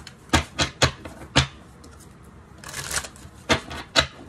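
Tarot cards being shuffled and handled: a few sharp snaps or taps in the first second and a half, a short rustle about three seconds in, then more snaps.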